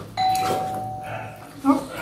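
A single bell-like ding: one clear tone that fades out over about a second and a half.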